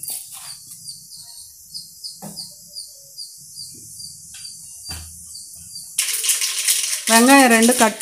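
Mustard seeds in hot oil, a faint sizzle with a few scattered pops as the seeds start to splutter.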